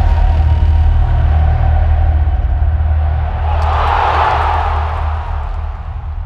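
Logo-animation sound design: a deep, steady bass rumble carrying on after an impact hit. Past the middle a whoosh swells up and dies away, and the rumble eases off slightly near the end.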